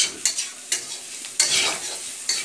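A spoon scraping and stirring diced potatoes and onions in a steel kadhai, in several sharp strokes, over the steady sizzle of the frying oil.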